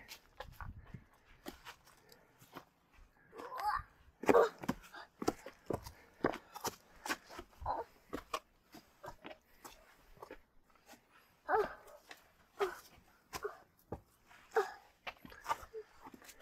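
Shoes stepping and scuffing on sandstone steps and crunching dry leaves during a climb: a string of short clicks and scrapes, with a small child's brief grunts a few times.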